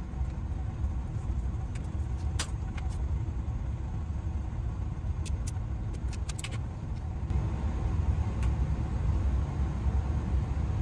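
A steady low mechanical rumble runs throughout. Over it come a few sharp clicks from hand tools on wire as wire ends are stripped for splicing: one about two seconds in, a quick cluster around the middle and one near the end.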